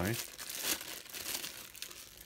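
Clear plastic bag around a power supply crinkling as it is handled, a dense run of crackles that is loudest in the first second and thins out near the end.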